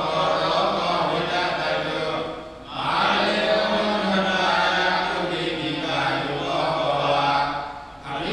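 Buddhist monks chanting Pali paritta together in long, low, held phrases, one voice amplified through a hand microphone. The chant breaks briefly for breath about two and a half seconds in and again near the end.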